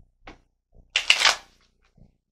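Tarot cards being handled from the deck: a short flick of cards, then a louder half-second riffle about a second in.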